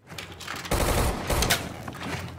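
Rapid gunfire from a movie shootout, starting about two-thirds of a second in, with shots coming in quick bursts.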